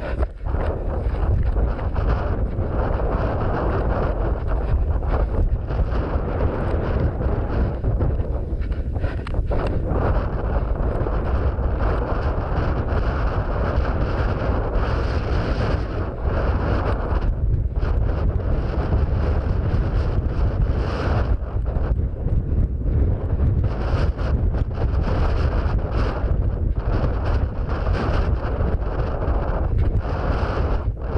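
Wind buffeting a head-mounted action camera's microphone on open moorland, a steady, heavy rumble as the wearer runs.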